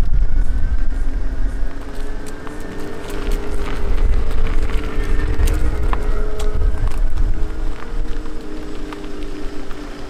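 A Mini Electric hatch driving slowly past over rough tarmac: a low rumble of tyres and wind, with a steady hum of a few sustained tones that rise slightly in the first couple of seconds and then hold.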